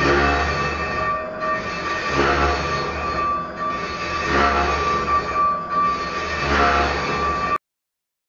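Large metal lathe machining a cast steel meatball-grinder bowl: the cutting tool on the steel gives a steady high whine over the machine's rumble, swelling into a heavier grinding pass about every two seconds. The sound cuts off suddenly near the end.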